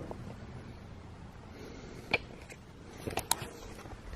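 Quiet room tone with a faint low background hum, broken by a single sharp click about two seconds in and a few more clicks a second later.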